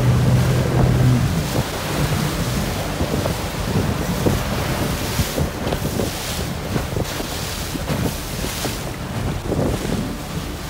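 A small jet boat under power through river rapids: a steady engine drone, clearest in the first second, under the rushing of whitewater and heavy wind noise on the microphone.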